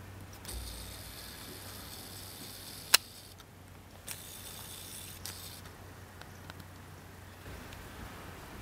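Camera zoom motor whirring in two spells, from about half a second to three seconds in and again from about four to five and a half seconds, with a steady low hum underneath. A single sharp click near three seconds is the loudest sound, and fainter clicks follow.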